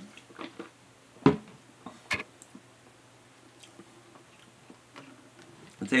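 A person drinking from a plastic shaker bottle and tasting: swallowing and mouth sounds, the loudest a short sharp one a little over a second in and another just after two seconds, then a few faint clicks of the lips and tongue.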